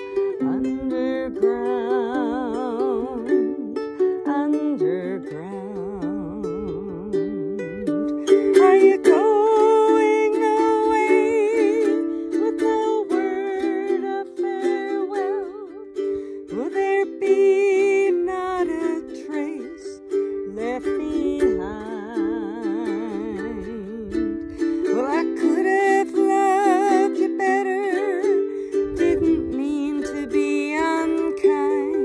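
Small acoustic stringed instrument strummed steadily through the chords of a folk song, with a wordless melody line with strong vibrato carried over the top in phrases of a few seconds.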